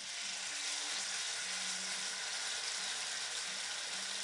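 Beef topside joint searing in hot rapeseed oil in a frying pan: the sizzling starts suddenly as the meat goes into the oil and then holds steady.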